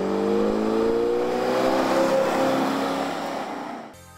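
1977 Oldsmobile Delta 88 Royale pace car's 403 cubic-inch V8 accelerating along the road. Its engine note rises for about the first two seconds, then holds and fades away near the end.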